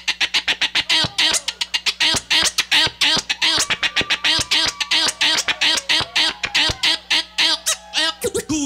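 DJ turntable scratching: a record pushed back and forth by hand on the turntable, chopped into fast, even stutters of many cuts a second with sweeping pitch.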